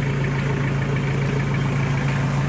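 Iseki 5470 tractor's diesel engine idling steadily, a constant low hum.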